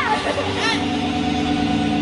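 An amplified electric guitar holds one steady, ringing note through the club PA, with shouted voices near the start.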